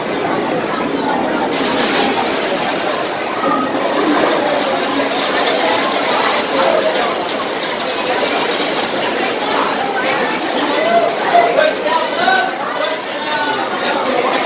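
Crowd chatter: many voices talking at once in a steady, indistinct babble with no single clear speaker.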